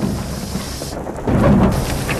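Heavy rain on a car, with a deep rumble underneath that grows louder about a second and a quarter in.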